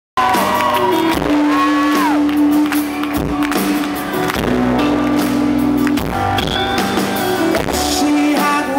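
A live band playing the instrumental intro of a pop-rock ballad on amplified acoustic guitar and drums over sustained bass notes. A voice, probably a shout from the crowd, rises and falls about a second in.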